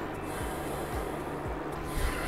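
Thick peanut sauce simmering in a pan as it is stirred with a silicone spatula: a soft, steady noise with a few faint knocks.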